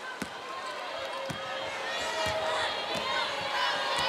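Arena crowd chatter with a basketball bouncing on the hardwood court several times at uneven intervals.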